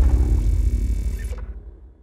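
A deep rumble from an intro sound effect dying away, fading steadily and cutting off just at the end.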